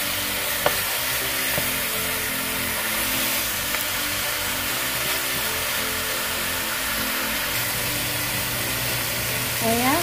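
Chicken pieces sizzling steadily as they sear on high heat in a stainless steel pan, with no oil added, rendering their own fat. Just under a second in, the metal spatula clinks once against the pan.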